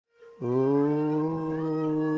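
One sustained musical tone begins about half a second in. It rises slightly in pitch over the next second, then holds steady.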